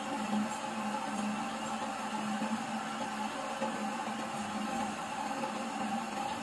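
Heidelberg offset printing press running steadily, an even mechanical hum.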